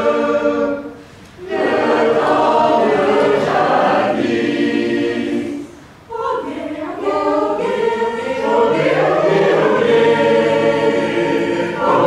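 Mixed choir of men's and women's voices singing a cappella in held chords, with two brief breaths between phrases, about a second in and around the middle.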